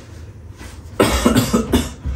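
A person coughing: a quick run of several coughs starting about a second in and lasting under a second.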